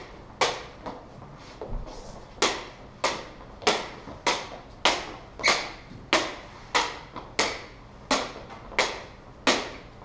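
Polycarbonate LED lightsaber blades clacking together in a steady strike-and-block drill. After two lighter hits early on, sharp clacks come in an even rhythm of a little under two a second, about a dozen in a row.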